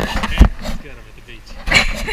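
A person's voice, briefly, with low rumble and a dip in the music.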